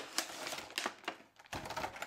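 Light, irregular clicks and taps of a clear plastic blister tray being handled as the action figures are taken out of it, dying away briefly just past the middle before picking up again.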